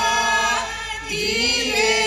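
A group of voices singing a song together, with a short break between phrases about a second in.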